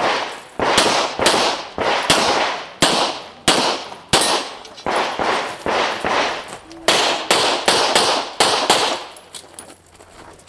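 Pistol shots fired in quick succession during a practical-shooting stage, about fifteen of them roughly half a second apart, each followed by a short echo. The firing stops about nine seconds in.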